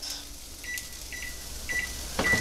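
Over-the-range microwave's keypad beeping as its buttons are pressed to key in a 10-second heating time: several short, high beeps, one per press, about half a second apart.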